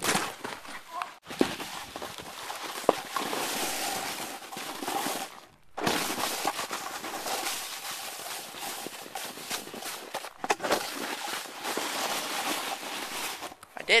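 Rushing, rustling noise on a handheld camera's microphone as it is swung and jostled about, with a few sharp knocks. The noise cuts out briefly twice.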